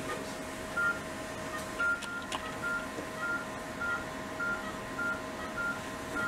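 Short electronic beeps of one steady pitch, repeating about every half-second from procedure-room equipment, over a steady machine hum. Two clicks come around two seconds in.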